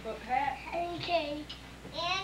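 A young child's high, sing-song voice with no clear words, rising and falling in pitch.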